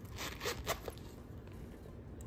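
Metal zipper of a small quilted leather Chanel zip-around card wallet being pulled shut: one quick zip lasting under a second, with two sharper strokes near its end.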